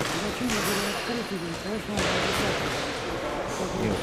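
Voices talking in a large, echoing boxing gym, with a couple of dull thuds of gloved punches landing, about half a second and two seconds in.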